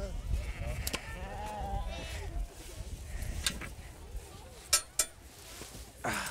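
Sheep bleating in a crowded sorting pen, with a few sharp knocks scattered through.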